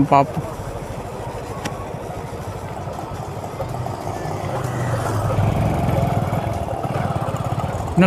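Motorcycle engine running while riding, a steady low rumble that grows louder and fuller about halfway through.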